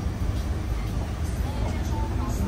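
Steady low rumble of a river cruise boat's engine heard from inside the passenger cabin, with faint voices and music over it.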